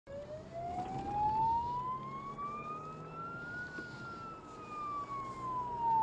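Emergency vehicle siren sounding one slow wail: a single tone rising steadily for nearly four seconds, then falling away.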